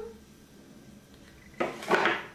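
A chunky metal link bracelet clinking twice in quick succession near the end, as the arm wearing it moves at the hair.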